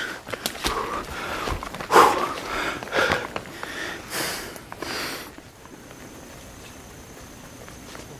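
A hiker's heavy breaths and rustling close to the microphone, with several loud breathy bursts over the first five seconds, the loudest about two seconds in. After that it is quieter, with a faint steady high whine.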